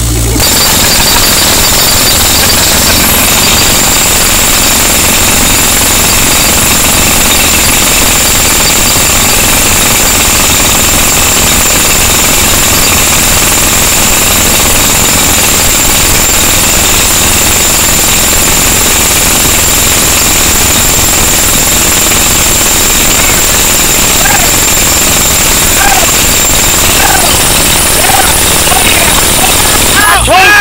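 Pneumatic jackhammer hammering continuously into rock and hard ground, starting almost at once and running without a break. A steady high-pitched whine runs through it.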